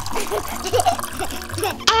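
Water trickling into a plastic toy potty as a baby doll pees, a thin steady hiss, under quiet background music.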